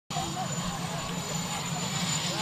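A steady low mechanical hum, with indistinct chatter from the gathered reporters over it.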